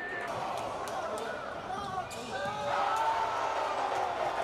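Game sound from an indoor basketball gym: a basketball bouncing on the hardwood court, several sharp knocks, over voices and chatter from the crowd.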